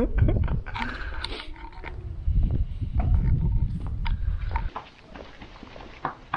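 Low, uneven rumble of wind buffeting the camera microphone, which cuts out about two thirds of the way in, with scattered footsteps on a stone and paved walkway.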